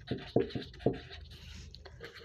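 Pen scratching on ruled paper as a word is handwritten, in a few short strokes during the first second, then fainter.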